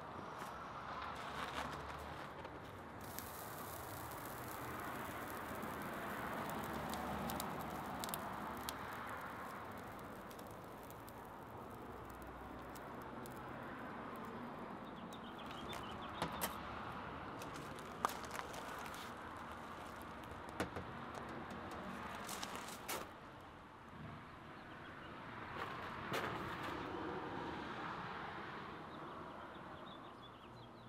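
Faint, steady outdoor background noise, with a few sharp clicks and knocks of handling partway through.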